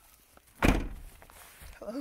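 A car door being shut: one heavy thunk about half a second in.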